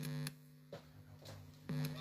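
Steady electrical hum, a low buzzing tone with overtones. It cuts out about a third of a second in and comes back near the end, with a few faint clicks in the quiet gap.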